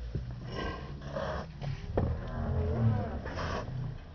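Slowed-down audio: voices stretched into deep, drawn-out, warbling sounds, with a few short knocks.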